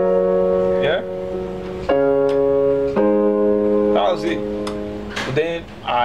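Portable electronic keyboard on a piano voice playing block chords in inversions, three chords struck about a second or two apart and left to ring. A man's voice starts talking over the last chord near the end.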